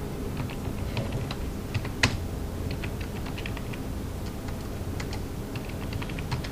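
Typing on a computer keyboard: irregular quick key clicks, with one louder click about two seconds in, over a steady low hum.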